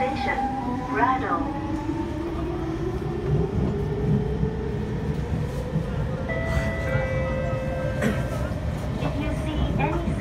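Inside a C651 metro train as it gathers speed: the traction motor whine rises steadily in pitch for about six seconds over the rumble of the wheels on the track. About six seconds in it gives way to a new set of steady electric tones.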